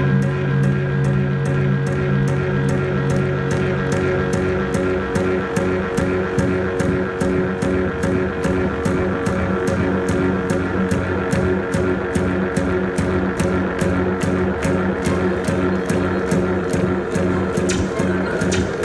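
Live electronic rock band played loud over a festival PA and picked up from the crowd: a steady, even beat over held tones, with a low sustained note dropping out about four seconds in.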